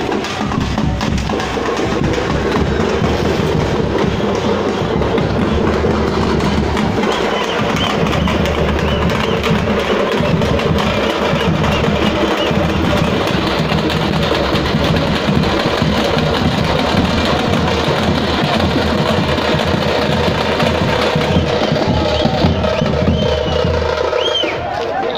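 Fast, continuous drumming by a procession drum band on large round parai (thappu) frame drums, beaten without a break.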